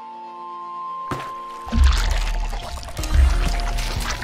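Logo intro sting: a held musical pad gives way about a second in to a sudden water-splash sound effect, then a deep bass hit, with splashy water noise over music.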